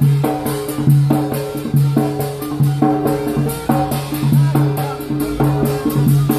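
Yemeni mizmar, a reed pipe, playing a fast repeating melody over a drum beaten with sticks in a quick, steady rhythm, about three to four strokes a second.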